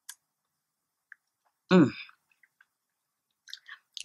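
A woman's short "mmm" hum a little under two seconds in, with a few faint mouth clicks before and after it; otherwise silence.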